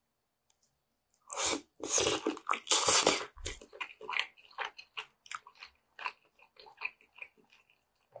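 Close-miked biting and tearing into sauce-glazed braised meat on the bone: a few loud bites a little over a second in, then quicker, softer chewing and lip smacks on the tender meat.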